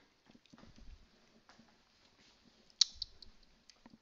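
Light scattered clicks and taps from handling a whiteboard marker at the board, with one sharp click a little under three seconds in.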